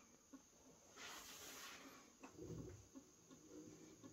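Near silence: room tone, with a faint hiss lasting about a second, about a second in.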